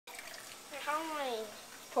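A person's voice: one drawn-out, wordless sound with a sliding, falling pitch, about halfway in.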